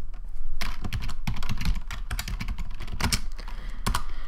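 Computer keyboard typing: a rapid, uneven run of key clicks starting about half a second in, as a short word is typed.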